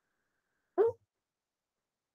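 Near silence, broken once about three-quarters of a second in by a very short voice-like sound that falls in pitch.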